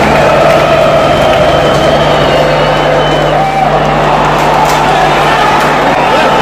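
Large football crowd singing and chanting together in the stands, loud and continuous, picked up close on a phone microphone among the fans.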